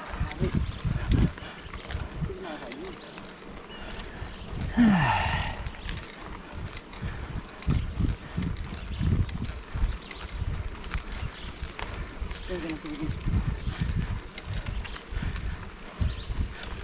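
Mountain bike climbing a concrete-block paved road, heard through an action camera's microphone: irregular low rumble from wind on the microphone and tyres over the pavers, with small clicks and rattles. A cough about five seconds in, and a brief low wavering vocal sound about twelve seconds in.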